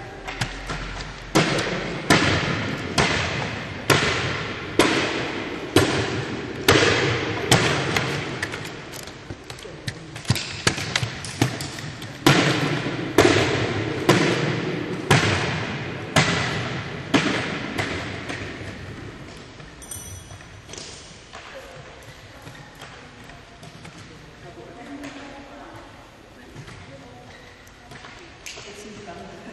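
Jumping stilts (powerbocks) bouncing on a sports hall floor: a regular thud about once a second, each ringing on in the hall's echo. The thuds die away after about 18 seconds, leaving faint voices.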